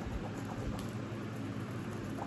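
Steady room noise: a low hum and even hiss, with a faint click or two from the plastic tray being handled.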